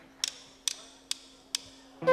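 A drummer's count-in: four sharp clicks of drumsticks struck together, evenly spaced a little under half a second apart, with a faint steady hum underneath.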